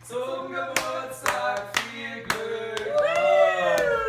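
A small group of people laughing heartily together, with a few sharp claps in among the laughter; near the end one long laugh slides down in pitch.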